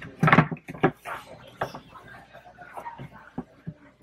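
Plastic knocks and clicks from a Hefty Touch Lid trash can as its lid is pressed down and the can is handled, with the loudest clunk just after the start and smaller taps after it.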